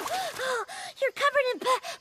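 A cartoon character's voice catching its breath in a string of short, pitched gasps, ending in a stammered "p-p" near the end.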